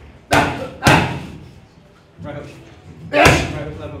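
Punches landing on leather focus mitts: two loud smacks about half a second apart near the start, a lighter hit a little after two seconds in, and another loud smack past three seconds in, each ringing briefly in the gym.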